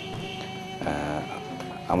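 Barak Valley folk music between sung lines: a steady sustained instrumental tone with a short vocal note about a second in.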